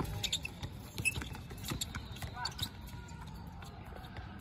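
A basketball bouncing on an outdoor hard court during play, a series of irregular thuds, with players' voices in the background.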